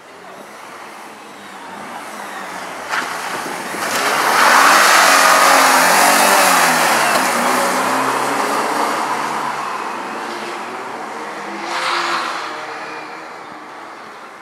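A Porsche 944 rally car's four-cylinder engine coming closer under hard acceleration and then passing. Its pitch climbs and drops as it revs through the gears, and it is loudest about a third of the way in before fading away. There is a short crack about three seconds in, and a brief surge of engine noise near the end.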